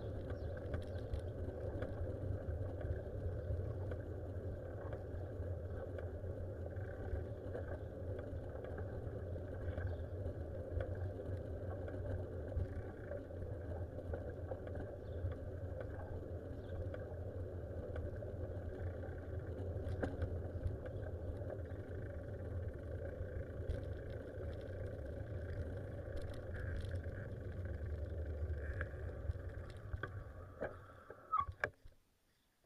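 Steady low rumble of travel noise from a camera moving along a paved road, wind and running noise from the vehicle carrying it, easing off near the end as it comes to a stop.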